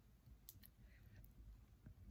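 Near silence with a few faint clicks, a pair about half a second in.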